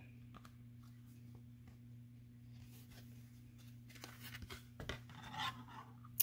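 Faint handling of a clear plastic embossing folder being opened: soft rubs and light clicks of plastic and paper, a little louder near the end, over a steady low hum.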